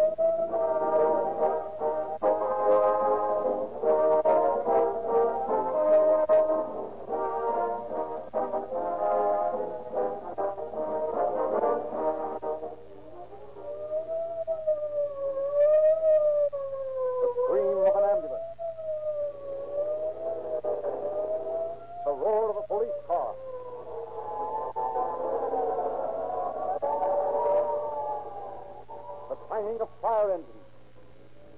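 A police siren wailing up and down about every two seconds under orchestral theme music with brass. The music drops away about halfway through, leaving the siren alone for several seconds, then comes back, and the siren winds down in a falling glide at the very end.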